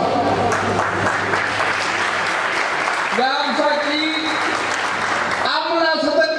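Audience applauding, a steady clatter of clapping that fades out near the end as a man's speech resumes; his voice cuts in briefly about three seconds in.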